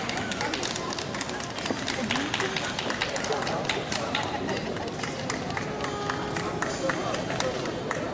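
Busy indoor hall ambience: many people talking at once, with frequent irregular sharp clicks and taps.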